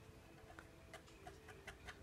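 Near silence, with a few faint, irregular clicks of metal and plastic as a small bicycle wheel is handled and fitted at its hub.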